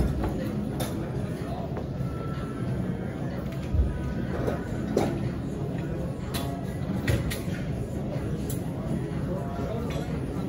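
Busy gym ambience: a steady murmur of other people's background chatter with faint music, broken by a few short knocks and clinks of equipment.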